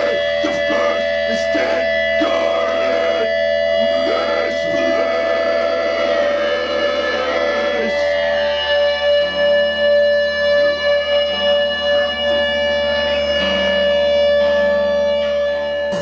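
A grindcore band playing live: held, droning electric guitar notes ringing with steady feedback-like tones, a voice shouting over them in the first half, and low bass notes stepping between pitches in the second half.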